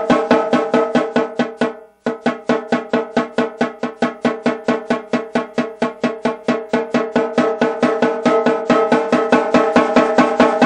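Evenly spaced drum strokes on a snare drum, about five a second, each with a short pitched ring. They die away to nothing about two seconds in, then start again softly and grow gradually louder. This is a touch exercise in controlling dynamics from pianissimo up.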